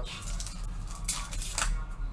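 Trading-card pack wrapper crinkling and tearing as a stubborn pack is worked open by hand, in a few short rustling bursts, the strongest a little after one second in.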